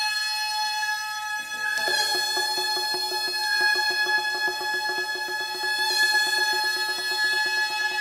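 Gagaku, Japanese imperial court music: an ensemble's reed wind instruments hold long, steady chords of high tones, and a lower held line enters about two seconds in.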